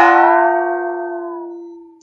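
A gong struck once and left ringing while partly submerged in water, its many partials fading out over about two seconds. The water's mass loading makes a few of the partials bend in pitch as the submerged area changes.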